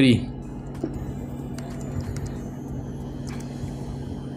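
Faint keyboard key clicks as a short word is typed, over a steady low hum.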